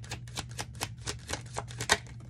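A deck of tarot cards being shuffled by hand: a fast run of card flicks, about seven a second, with the loudest snap near the end.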